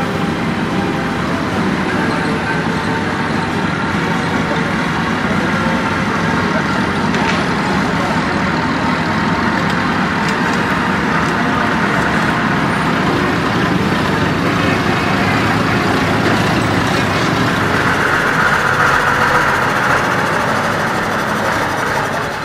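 Engines of vintage lorries and buses running, a steady mechanical din with people's voices mixed in.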